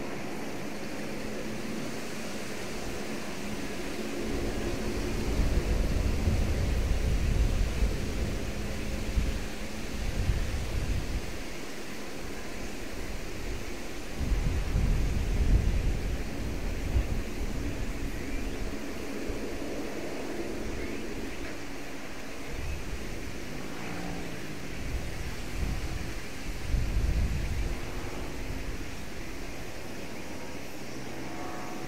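Lockheed Martin C-130J Super Hercules taxiing at a distance, its four Rolls-Royce AE 2100 turboprop engines running with a steady droning hum. Irregular low rumbles swell and fade several times over it.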